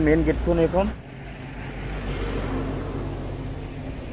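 Outdoor road traffic noise, swelling and fading gently over a couple of seconds like a vehicle going by. It follows a brief stretch of a person talking in the first second.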